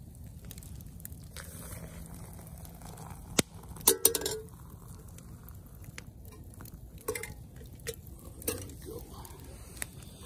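Stainless steel pot and mug clinking as boiling water is poured from the pot onto coffee grounds in a steel mug: a few sharp metal clinks, the loudest cluster about four seconds in.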